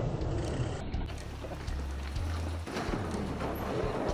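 Mountain bike tyres rolling over wooden plank bridge boards, knocking across the planks, under the rumble of wind buffeting a helmet-mounted camera microphone.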